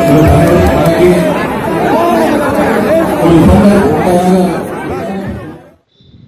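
A large crowd chattering and calling out, many voices at once, loud, with music under it; the sound fades out abruptly shortly before the end.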